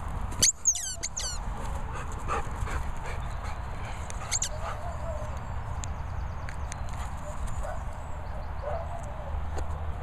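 German Shepherd barking twice in quick succession on a 'speak' command, followed by a few softer yips and whimpers.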